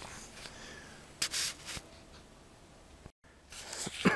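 Faint rustling of a coat and handling noise on the microphone as the camera is moved, with a short louder rustle about a second in and a few small clicks. The sound cuts out for an instant near the end.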